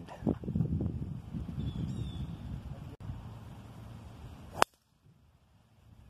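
A single sharp, loud crack of a golf club striking a ball off the tee, about four and a half seconds in. Before it there is a low rumbling background noise.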